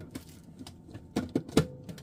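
Hard plastic clicking and knocking as a clear plastic cover is fitted onto a citrus press: a few sharp taps close together in the second half.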